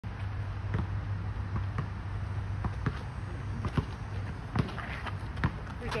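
A basketball bouncing on an asphalt court: a string of sharp thuds at uneven spacing, roughly one a second, over a steady low hum.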